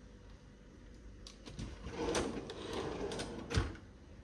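Kitchen cabinet door being handled: a few light clicks and some rustling, then the door shutting with a solid thump near the end.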